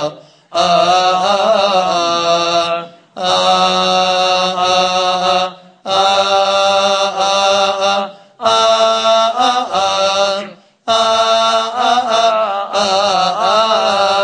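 Coptic Orthodox liturgical chanting, sung in phrases of about two to three seconds with short breaks between them, the melody winding up and down within each phrase.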